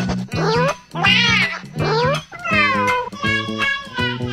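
Cat meows over background music with a steady low bass line: four drawn-out cries, each sliding up or down in pitch, the loudest about a second in.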